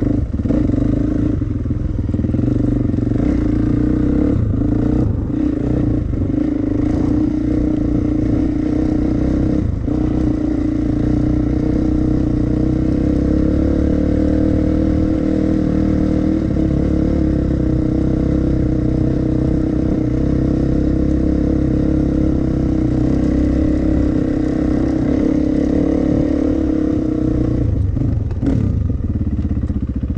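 Dirt bike engine running at a steady, fairly even pitch while riding over rough grass, with a few short knocks from the ground in the first ten seconds.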